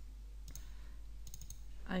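A few faint computer mouse clicks while working in a 3D program, with a couple close together about a second and a half in.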